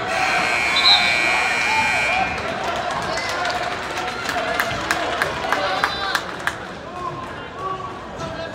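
Gym scoreboard buzzer sounding for about two seconds at the start, marking the end of a wrestling period, then crowd chatter with scattered sharp knocks.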